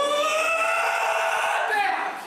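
A young man screaming: one long, high-pitched scream held on a single note that slowly rises and breaks off just before the end.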